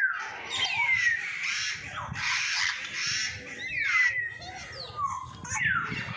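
Birds calling from an aviary: a busy mix of harsh squawks and short falling whistles, several calls every second.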